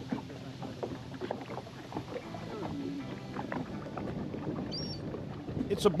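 Boat motor running steadily while the boat moves over open water, with seabirds calling overhead and a short high call about five seconds in.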